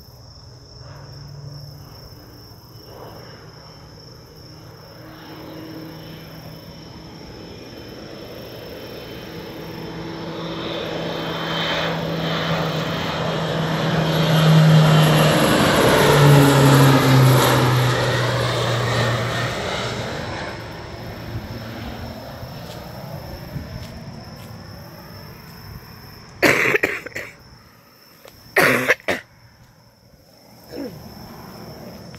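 Crop duster plane flying low overhead. The drone of its engine and propeller grows louder, peaks as it passes directly over, drops in pitch as it moves away, and fades. Two brief, loud noises come near the end.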